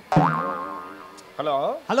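Comic 'boing'-style sound effect added in the edit: a sudden wobbling tone that fades out over about a second. A voice calls 'hello' near the end.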